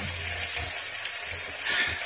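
Steady hiss of water running from a tap in a small bathroom.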